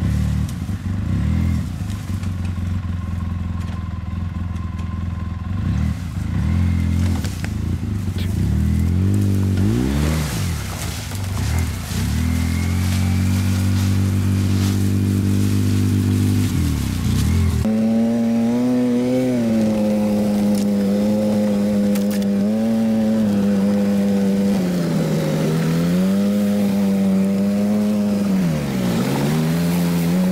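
Polaris RZR side-by-side's engine running at low revs, its pitch wavering with the throttle. About halfway through the sound changes suddenly to a louder, higher engine note close to the microphone that rises and dips repeatedly with the throttle.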